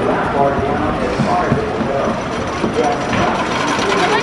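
Wooden roller coaster's train and track machinery making a continuous irregular clicking and rattling clatter.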